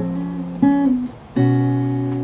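Acoustic guitar chords being played: one chord ringing on, a new chord struck about half a second in that fades away, and another struck near the middle and left to ring.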